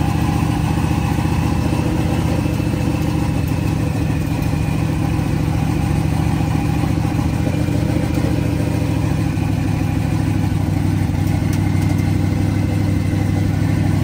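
Drag race car's engine running at a steady, even pace as the car is driven slowly, heard from inside the stripped cabin.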